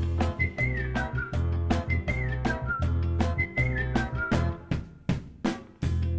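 Upbeat background music: a whistled tune in short falling phrases over a steady drum beat and bass.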